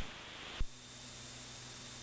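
Faint hiss and a steady low hum on the aircraft's headset radio/intercom audio, with a sharp click right at the start as the radio transmission ends and a second brief click about half a second in.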